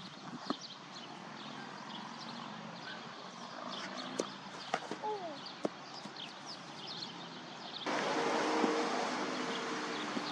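Open-air ambience with small birds chirping and a few sharp knocks, the loudest about four seconds in. Near the end a louder steady hiss sets in abruptly.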